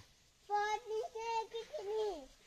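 A high voice singing a few held notes, stepping between pitches and sliding down near the end.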